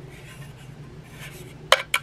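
Two sharp clicks near the end as the slow cooker's removable metal pot insert is handled and knocks against something hard, over a low steady hum.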